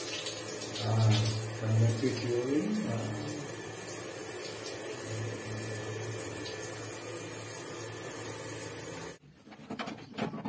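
Shower spray from a Bluegaz gas instantaneous water heater with its burner lit: a steady rushing hiss with a low hum, the heater now firing instead of only clicking. It cuts off sharply about nine seconds in, leaving a quieter room with a few light knocks.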